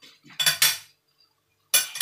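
Metal spoon and fork scraping and clinking against a wok of stir-fried noodles: two quick strokes about half a second in, and a louder one near the end.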